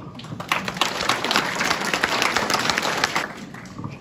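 An audience applauding, swelling soon after the start and dying away near the end.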